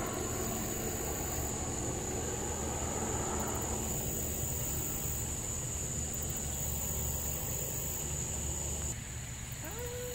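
Steady outdoor background noise: a low rumble with a thin, high-pitched whine over it that stops about nine seconds in.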